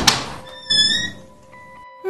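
A single heavy thunk of a wooden door shutting, as a sound effect, followed about half a second later by a short high-pitched tone with a slight rise, over background music.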